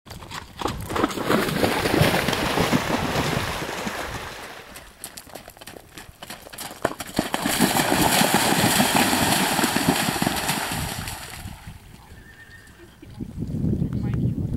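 Horse cantering with irregular hoofbeats, then splashing through shallow water for about four seconds from just past halfway.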